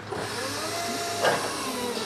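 Toyota Geneo-R electric reach truck's motor running steadily with a whirring hiss and a faint whine, as it is operated among the pallet racks.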